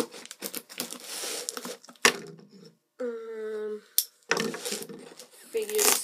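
Utility knife slicing through packing tape and cardboard on a box, with scraping and tearing stretches, a sharp knock about two seconds in and another near four seconds. A short hummed voice note comes around three seconds.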